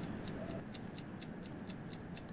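Fast, even ticking, about six ticks a second, over faint room tone.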